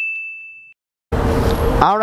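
A single bright, bell-like ding from a logo sound effect, ringing and fading out about three quarters of a second in. After a brief silence, background hiss comes in and a man's voice starts near the end.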